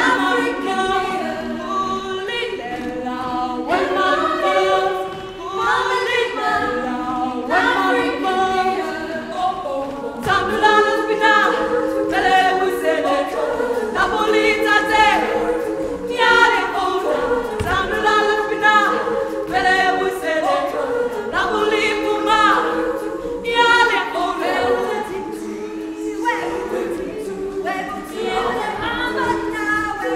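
Women's choir singing a cappella in several-part harmony, the voices moving together from note to note.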